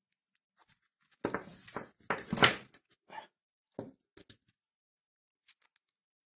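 Rustling and scraping of a paper towel as small dishwasher pump parts are handled on it, loudest about two and a half seconds in, followed by a few faint clicks.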